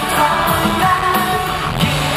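A pop-rock band playing live: a male lead voice sings over keyboard and drums, with regular cymbal hits, heard from among the audience.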